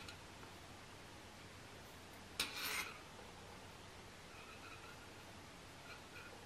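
Quiet handling of knitting needles and yarn: about two and a half seconds in, a short click followed by a brief rustle.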